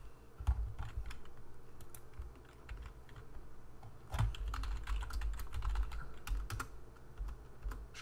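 Typing on a computer keyboard: irregular keystrokes, a short run about half a second in and a longer, denser run from about four seconds in.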